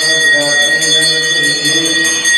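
Temple bell rung rapidly and without a break, a steady bright ringing, with a voice chanting underneath.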